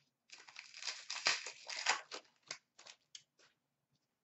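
Plastic-foil wrapper of a hockey trading-card pack being torn open and crinkled by hand, a quick run of crackles and rustles lasting about three seconds, loudest about a second and two seconds in.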